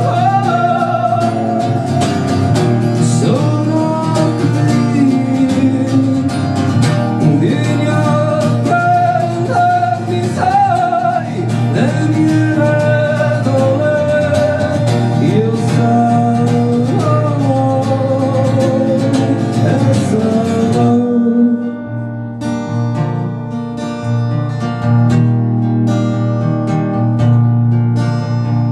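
Live solo performance: a man sings over a strummed acoustic guitar. About 21 seconds in, the voice stops and the guitar plays on alone, a little quieter.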